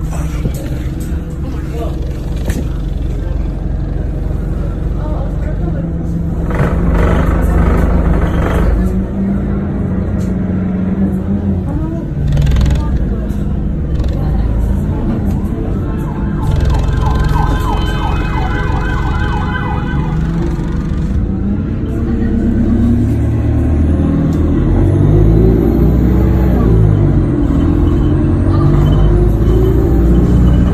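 Busy street soundscape: steady vehicle rumble from traffic, indistinct voices, and an emergency siren sounding, with a pulsing siren-like tone a little past the middle.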